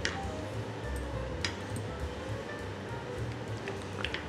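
Soft background music with a low, shifting bass line. A few light clicks of a ladle against a pan of cream sauce being stirred come at the start, about a second and a half in, and near the end.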